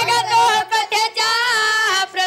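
High women's voices singing a Marathi tamasha song in short phrases with brief breaks between them; the low instrumental accompaniment drops away about half a second in.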